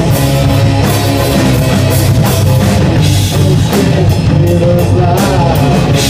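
A live rock band playing loudly: electric bass, two electric guitars and a drum kit with cymbals.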